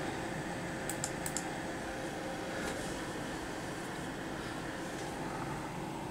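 A few light clicks, a cluster about a second in and one more shortly after, over a steady hum with a faint steady tone. The servo rig is not running: it is not switched on.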